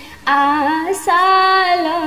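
A woman singing a traditional Bhojpuri Jitiya devotional song in long, wavering held notes, with a short pause at the start and a quick breath about a second in.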